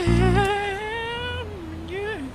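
A voice humming one long, slightly wavering note, its pitch slowly climbing and then dropping about three quarters of the way through. A low note sounds under it for the first half second.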